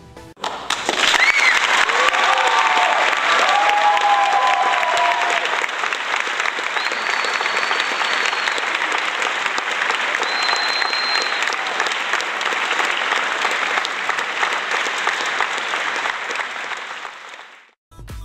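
Applause with cheering, a few whoops in the first seconds and short high whistles midway; it cuts in suddenly and fades out just before the end.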